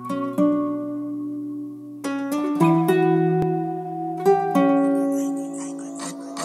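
Sad western-style acoustic guitar melody from a trap instrumental: single plucked notes ringing out slowly over a held low tone. A faint high hiss swells near the end.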